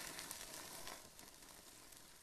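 Salmon fillets sizzling faintly on a hot grill grate over coals, a soft crackling hiss that drops lower after about a second.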